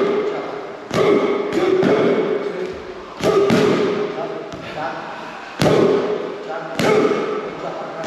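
Boxing gloves smacking padded striking sticks in sharp hits a second or two apart, with a voice sounding between the hits.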